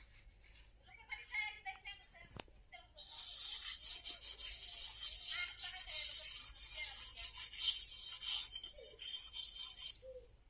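A metal karai (wok) being scrubbed by hand, a steady rasping scrape that starts about three seconds in.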